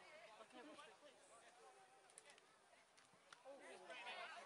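Near silence with faint, distant voices calling and talking around the field, and a couple of faint clicks in the second half.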